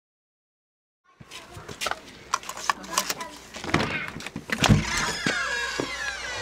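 Silence for about the first second, then a run of sharp clicks and knocks from a hotel room door's key-card lock and lever handle being worked and the door opening, with one heavier knock a little before the end.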